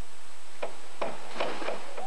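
A diver entering the pool off a 1 m springboard: a short cluster of sharp splash sounds, starting about half a second in and lasting about a second, over a steady tape hiss.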